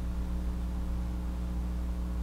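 Steady low electrical hum with faint hiss, the recording's background room tone; no other sound.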